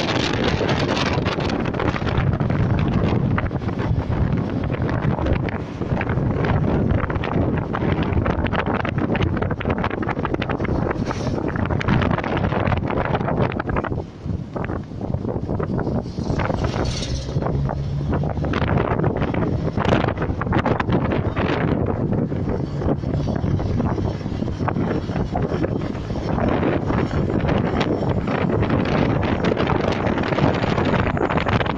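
Wind buffeting the microphone through an open car window while driving, over the car's road and engine noise. About halfway through the noise dips briefly, and a bus passes in the other direction with a steady low hum.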